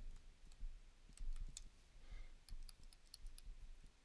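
Faint, irregular clicks and taps of a stylus writing on a tablet screen.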